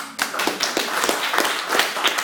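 Small audience clapping, a dense patter of many hands. The last acoustic guitar chord is still fading underneath as the clapping starts.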